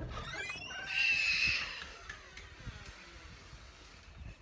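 A door squealing as it is pushed open: a rising squeak, then a louder held high squeal about a second in, with footsteps and phone handling behind it.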